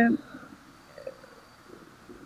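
A woman's drawn-out hesitation sound "ee" at the very start, then a pause with only faint background noise and a small faint blip about a second in.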